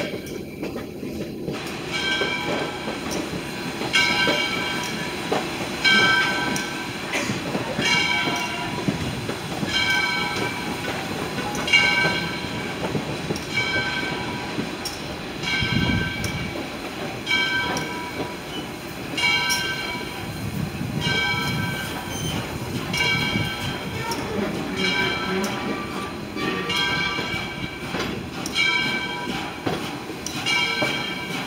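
Southern Railway No. 630's locomotive bell ringing about once a second over the low rumble and wheel clatter of the steam train rolling slowly along the track.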